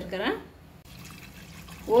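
Water being poured into a steel pressure-cooker pot of dal and vegetables: a faint steady pouring that starts about half a second in, under the end of a woman's words.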